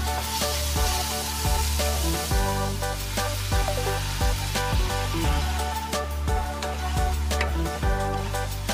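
Electronic background music with a steady beat over the sizzle of minced pork stir-frying in a non-stick wok. A louder hiss sets in about a quarter second in and fades by about two seconds, as water hits the hot pan.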